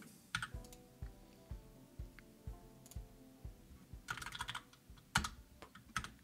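Computer keyboard typing: scattered keystroke clicks with a quick cluster about four seconds in and a sharper click just after five seconds. Faint background music with a soft steady beat runs underneath.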